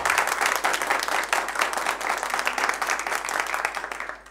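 A small crowd applauding: many hands clapping in a dense, steady patter.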